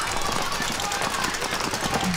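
Paintball markers firing in rapid strings of quick pops over steady outdoor field noise.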